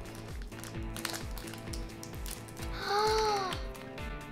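Background music with a steady drum beat, about two beats a second, under held tones; a short note rises and falls about three seconds in.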